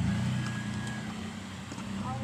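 A motor vehicle engine running nearby: a steady low hum that comes up at the start and holds on.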